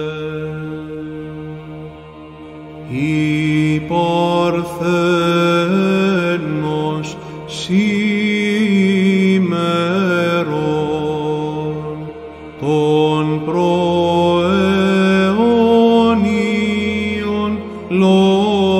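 Byzantine chant: male voices holding a steady low ison drone while the melody unfolds in a long, ornamented melisma without words. The drone sounds alone for the first three seconds before the melody comes back in; the melody pauses briefly near twelve seconds and then resumes.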